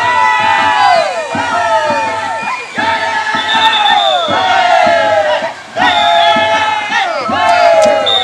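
A crowd of dancers shouting together in long, loud cries that slide down in pitch, repeated every second or so.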